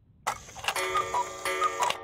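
A clock-ticking musical sound effect: ticks under bright ringing tones, with a short falling two-note chime heard twice. It marks the passage of time to a new time of day.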